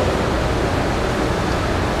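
Steady, even background hiss with no speech.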